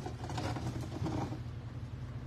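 A steady low machine hum with a faint hiss over it, unchanging throughout.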